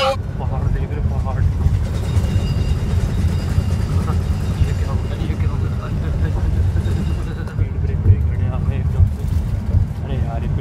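Steady low rumble of a moving bus, engine and road noise heard from inside the cabin.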